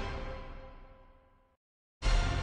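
A short musical sting, a bright chord of many tones that fades away and cuts off about a second and a half in, marking a new answer option popping up on a quiz screen.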